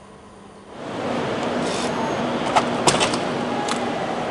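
Quiet room tone gives way, about a second in, to a much louder steady rush of outdoor air and wind noise as a door opens from the lounge onto the terrace, with a few sharp clicks partway through.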